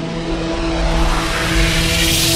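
Channel-logo sound effect, a cinematic riser: a steady low hum under a hissing swell that keeps growing louder and brighter.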